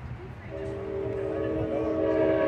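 Train horn sounding a steady multi-note chord. It starts about half a second in and grows louder as it holds.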